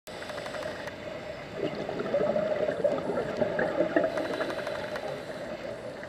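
Scuba regulator exhaust bubbles gurgling and burbling underwater, heard through an underwater camera housing, in an irregular run that keeps going.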